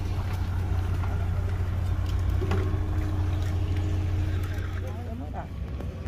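An engine idling steadily with a low hum that fades away near the end, with faint voices in the background.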